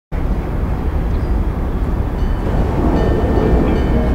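Train running on the rails: a loud, dense rumble with heavy low end that starts abruptly. Faint musical tones fade in during the second half.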